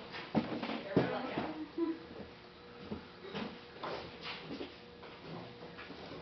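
Indistinct talk from a small group of people, with a few sharp knocks in the first second or so and a faint steady hum underneath.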